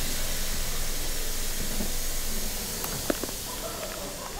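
Seoul Metro Line 5 subway train running between stations, heard from inside the carriage as a steady rushing noise that eases off slightly after about two and a half seconds. A faint click comes about three seconds in.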